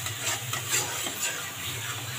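Metal spatula scraping and stirring a thick masala paste in a steel kadai, about four strokes a second, over a steady sizzle as the paste fries.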